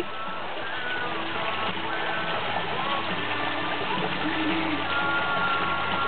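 Steady splash of a rock waterfall pouring into a swimming pool, with faint music underneath.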